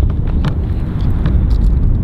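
Wind buffeting the camera microphone: a loud, uneven low rumble, with a few faint clicks over it.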